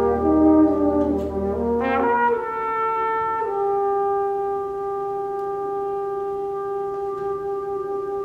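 Solo trumpet with a concert band: a sustained band chord with low notes under the trumpet, then a quick upward run about two seconds in, after which the band's low end drops out and the trumpet holds a long note, stepping down to a lower held note partway through.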